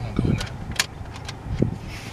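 A few sharp plastic clicks and handling rustles as a CD is handled and fed into a newly installed car stereo.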